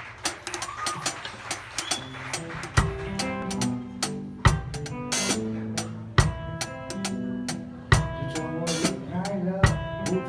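Drum kit played in a rock groove: snare, tom and cymbal strokes with a heavy bass-drum hit about every second and a half to two seconds, over a pitched backing track.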